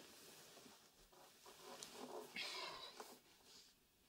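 Near silence: faint rustles and light knocks as a stringed instrument (an autoharp) is lifted from the floor beside a sofa, with a brief faint pitched sound a little past halfway.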